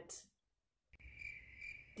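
After a brief dead silence, a faint, steady, high-pitched insect trill sounds in the background, pulsing slightly, like a cricket chirping.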